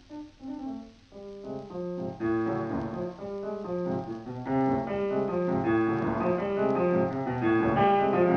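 Piano music, sparse and quiet at first, then picking up with a run of notes about two seconds in and growing fuller and louder.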